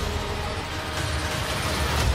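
Trailer sound design: a loud, dense, sustained rumbling swell with faint held tones under it, dipping slightly mid-way and building again near the end.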